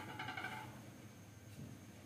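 A brief high squeak of plastic rubbing on plastic, about half a second long at the start, as a side cover is worked off the frame of an opened-up Canon G3020 inkjet printer.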